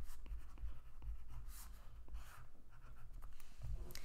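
Graphite pencil scratching faintly on a sheet of paper, with a few light taps as a plastic protractor is handled on the page.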